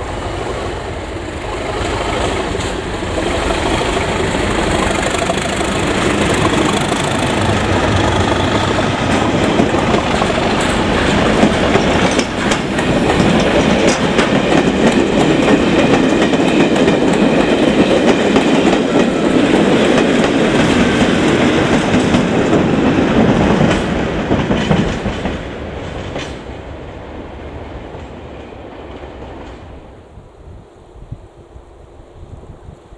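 Two English Electric Class 37 diesel locomotives departing under power, their V12 diesel engines running louder as they approach and pass, followed by test coaches with wheels clicking over the rail joints. The sound builds over the first dozen seconds, is loudest through the middle, and fades away in the last few seconds as the train recedes.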